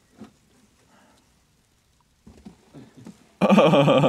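Faint rustles and small knocks, then near the end a man suddenly lets out a loud, drawn-out yell.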